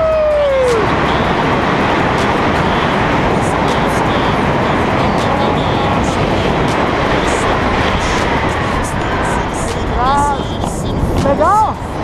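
Wind rushing steadily over a hand-held action camera's microphone during a tandem parachute descent under an open canopy. A man's call falling in pitch opens it, and short voiced calls come near the end.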